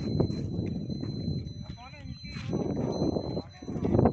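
Outdoor ambience on a phone's microphone: a low rumble with scattered knocks, indistinct voices, and a steady high-pitched whine. A short warbling animal call, like a bird, comes about halfway through.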